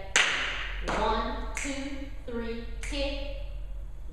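Four sharp taps, the first just after the start and the loudest, the others about a second apart, with a woman's voice in between.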